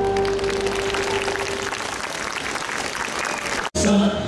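Concert audience applauding as a held note of the song dies away in the first second or two. The sound drops out abruptly for an instant just before the end.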